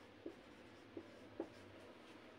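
Marker writing on a whiteboard: three faint short strokes as a word is written out.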